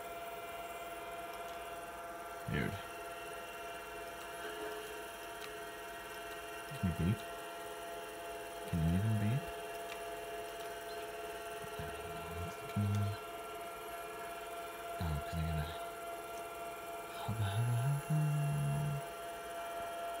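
Apple Lisa 2/10 running with a steady hum. Short, low tones sound at irregular intervals over it; the longest, a stepped rising one, comes near the end.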